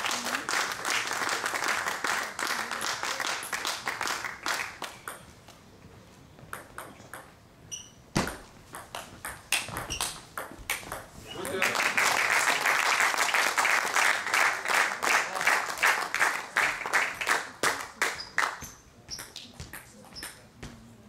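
Table tennis ball clicking off bats and the table in a rally, in a stretch of sparse separate clicks with one heavier knock, set between two loud stretches of dense hall noise that PANN hears as voices.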